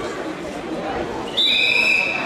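Referee's whistle blown once, a loud shrill blast lasting under a second near the end, signalling the start of the wrestling bout. Chatter in a large sports hall underneath.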